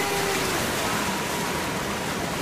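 Steady rushing of churning white water below a weir's boat chute, around a canoe that has just come down it, easing slightly.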